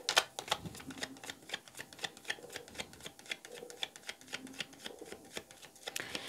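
A deck of cards being shuffled by hand, a quick run of light card clicks at about five or six a second.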